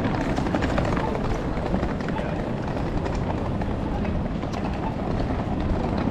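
City street ambience: a steady low rumble with people's voices.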